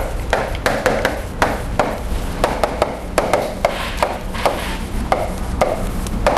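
Chalk writing on a blackboard: an uneven run of sharp taps and short scrapes, about three a second, over a low steady hum.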